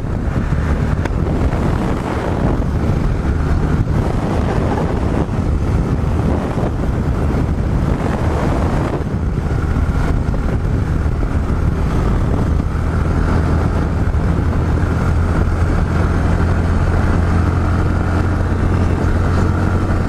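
Yamaha XT 660Z Ténéré single-cylinder engine running steadily at highway cruising speed, a constant low drone, with wind rushing over the microphone.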